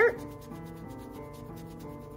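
A small piece of wet Mr. Clean Magic Eraser rubbed back and forth on the doll's plastic body, scrubbing off scuff marks, with faint background music.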